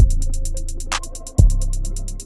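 Trap beat playing back from Logic Pro: rapid, even hi-hat ticks from Logic's Drummer run throughout. A deep bass kick hits at the start and again about a second and a half in, and a clap lands just under a second in, over a sustained melody note.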